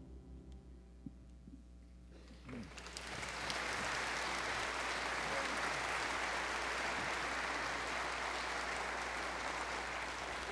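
A church congregation applauding. A brief hush is followed by clapping that starts about two and a half seconds in, swells, and then holds steady.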